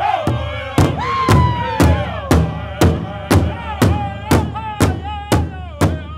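Powwow drum group singing a contest song: men's voices in unison, high and sliding down in pitch, over a large powwow drum struck together with drumsticks in a steady beat of about two strikes a second. The heavy drumbeats come in about a second in.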